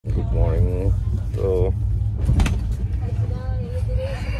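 Steady low rumble of a moving vehicle heard from inside the cabin, with a man's voice making two short sounds early on and a sharp click about midway.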